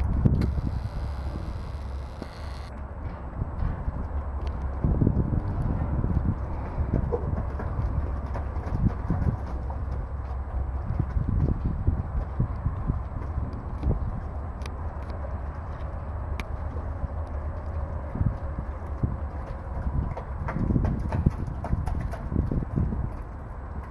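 Black beef cattle shuffling and stepping in a muddy pen: irregular dull thuds over a steady low rumble, with no calls.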